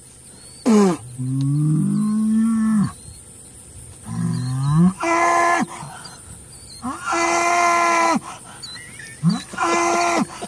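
Holstein cattle bellowing and mooing. A short call comes just under a second in, then a low, wavering bellow of about two seconds and another short low call around four seconds. Higher, steady moos follow about five and seven seconds in, the second lasting about a second, with short calls near the end.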